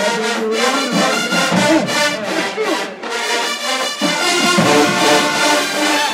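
College marching band playing, its brass carrying the music.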